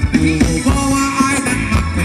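Amplified live ramwong band music: a steady drum beat under a melody line, with singing.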